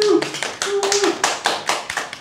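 A few people clapping in a small room, quick and uneven, with a brief held voice over the claps a little under a second in.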